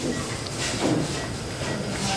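Operating-room background noise picked up by a camera lying on the floor: a steady hiss with faint clinks and knocks.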